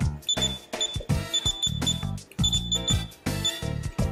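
Key-press beeps from a JR XG14 radio-control transmitter as its menu cursor is stepped along: about a dozen short high beeps in quick clusters. Background music plays underneath.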